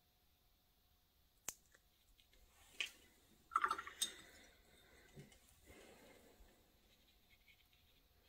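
Quiet sounds of a watercolour brush dabbing paint onto wet paper: a sharp tick about a second and a half in, then a few soft, brief touches around the middle.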